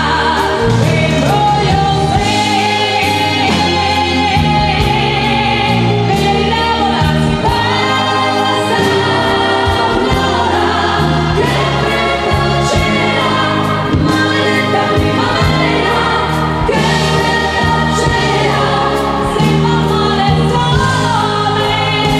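Amplified female lead vocal singing a pop song over band accompaniment, played live through a PA.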